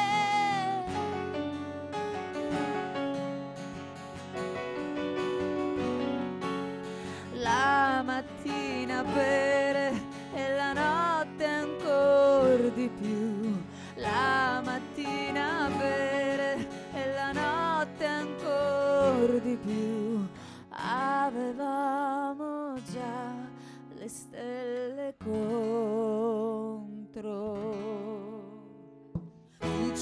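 Live band music: a wavering, gliding melodic lead over sustained accompaniment chords, with a short dip in the sound near the end.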